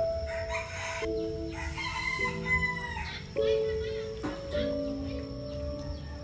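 A rooster crowing once, one long call in the first half, over background music of slow held notes.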